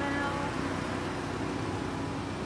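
A steady low mechanical hum, like a vehicle engine running, with a voice trailing off in the first half-second.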